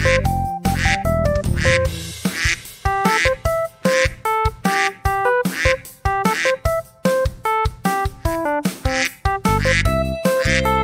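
Upbeat background music: short keyboard notes over a steady beat of about two hits a second. A deep bass line drops out about two seconds in and returns near the end.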